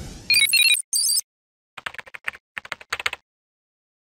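Logo sound effects: a quick run of high electronic beeps in the first second, then a burst of computer-keyboard typing clicks lasting about a second and a half as the web address is spelled out.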